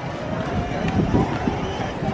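Outdoor pedestrian-street ambience: indistinct voices of people walking nearby over a low, uneven rumble on the microphone of a walking handheld camera.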